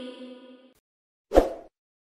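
The echo of a recited voice dies away. About a second and a half in comes a single short pop sound effect, the kind that opens a subscribe-button animation.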